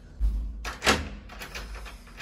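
A dull, deep thump about a quarter second in, followed about a second in by a short, sharp knock.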